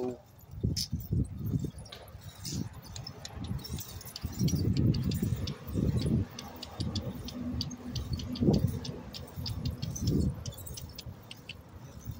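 Wind buffeting a phone microphone in uneven gusts while riding a bicycle, with a run of light, irregular clicks and rattles from the bike.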